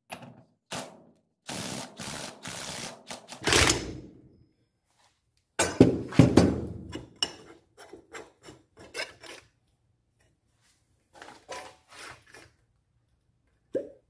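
A rag rubbing over the oily metal of a floor jack's hydraulic cylinder, then metal clunks and lighter clicks as the outer cylinder is gripped and taken off the jack's base. The loudest clunks come about halfway through.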